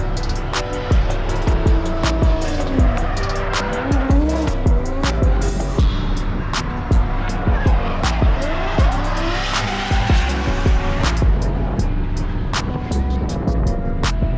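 Drifting car's engine revving up and down with tyres squealing as it slides round the circuit, over music.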